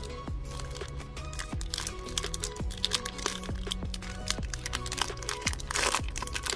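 Background music with a steady beat, over the crinkling and crackling of a foil trading-card pack wrapper being handled, loudest just before the end.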